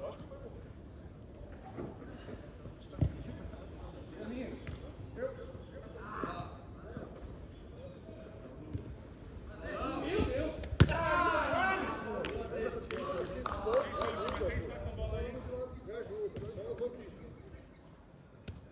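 A football being struck on an artificial-turf pitch: a sharp thump about three seconds in and a louder one near the middle. Players shout over each other for several seconds after the second thump.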